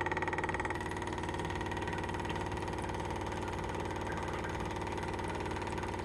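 Small 12-volt electric fuel pump running steadily, a fast even ticking buzz, as it pumps diesel through a hose into a generator's fuel tank. About a second in its tone shifts slightly lower, then it runs on unchanged until it cuts off suddenly.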